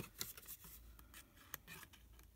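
Small paper snips cutting thin cardstock: a few faint, sharp snips.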